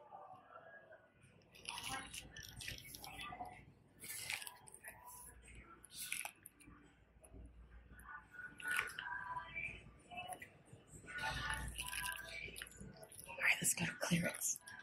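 Shop ambience: indistinct background voices mixed with scattered light clicks and rustles.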